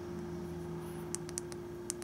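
Faint handling clicks and light taps from a small flashlight body being turned in the fingers, several in quick succession in the second half, over a steady low hum.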